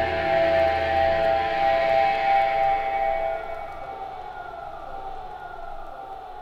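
The end of a hardcore punk song: a held, distorted electric guitar chord rings out and fades, dying away about three and a half seconds in, with faint sliding tones left under it.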